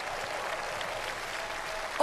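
Large audience applauding, a steady even sound of many hands clapping.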